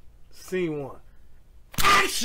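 A film clapperboard snapped shut once near the end, a single sharp clack, after a brief voice sound about half a second in.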